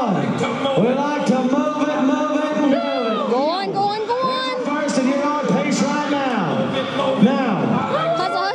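A man's voice calling in long, drawn-out held tones, as an announcer does during a barrel-racing run.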